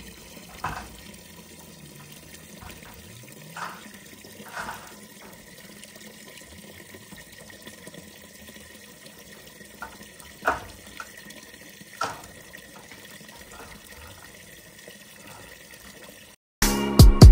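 Water running steadily from the tap of a plastic water storage tank into a plastic bucket, a constant splashing stream. A few short knocks sound over it, the loudest two about ten and twelve seconds in.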